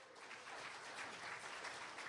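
Faint audience applause, a steady patter of many hands clapping in a hall.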